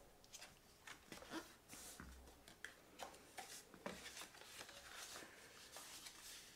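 Faint rustling and small crackles of patterned paper being folded and creased by hand along its score lines.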